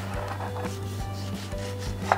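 Kitchen knife drawn through a tomato on a cutting board: a rubbing, slicing sound with no sharp chop, over quiet background music.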